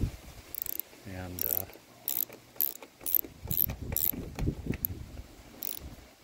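Socket ratchet with a 10 mm socket on an extension driving a small screw into a plastic trim clip: the pawl clicks in short bursts about twice a second as the handle is swung back and forth.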